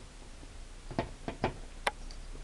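Victorinox bit wrench's metal shaft and plastic bit holder clicking together as the tool is handled and taken apart: four short clicks in the second half, the last the sharpest.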